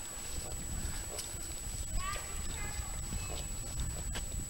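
Outdoor ambience with a low wind rumble on the microphone. Faint, high-pitched voices call in the distance about halfway through.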